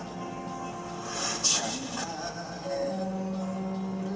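A male singer's live vocal with acoustic guitar accompaniment. A long held note begins about three seconds in.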